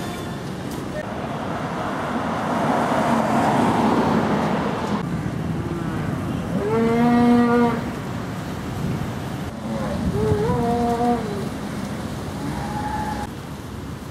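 Cattle mooing twice. The first moo, a little under halfway through, is low and steady and lasts about a second; the second, a few seconds later, is higher and bends in pitch. Before them a rushing noise swells and cuts off sharply about five seconds in.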